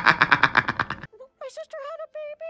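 A young man laughing hard, in quick rhythmic bursts of about eight a second, cut off abruptly about a second in. After a brief gap, a quieter, thin, wavering pitched sound starts.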